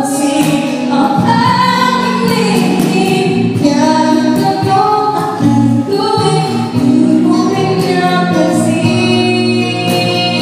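Live band performance: a woman singing a ballad into a microphone through a PA, with electric guitar and keyboard accompaniment, her notes held and sustained.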